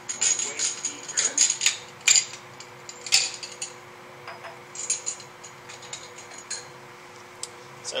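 Glass beakers clinking and clattering as they are handled and one is taken out, in quick runs of sharp clinks during the first half and again briefly later. A steady low hum runs underneath.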